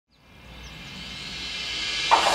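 Outdoor nature ambience fading in from silence: a steady hiss with two brief high bird chirps, near the start and about half a second in.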